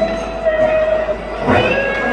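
Live rock band playing an instrumental passage of a slow ballad: held electric guitar notes over bass guitar, with a new chord struck about one and a half seconds in.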